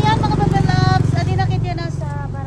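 A voice talking over the steady low rumble of an idling vehicle engine.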